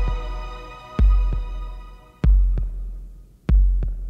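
Slow heartbeat-like double thumps, a deep beat followed by a softer one, three times about a second and a quarter apart, at the close of a new-age synthesizer track. The held synth chord fades out behind them.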